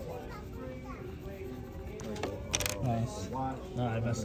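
Faint voices in the room, with a short scratchy noise about two and a half seconds in.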